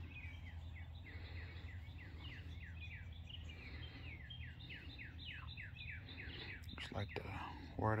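A bird singing a long run of quick, falling chirps, several a second, over a steady low outdoor hum.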